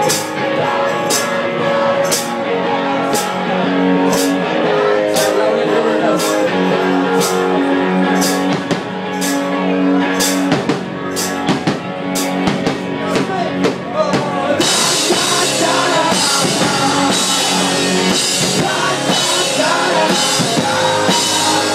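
Live indie-rock band playing, with a drum kit, singing and bowed cello, and a sharp tick on the beat about twice a second. About fifteen seconds in, the sound fills out with a bright continuous wash over the top.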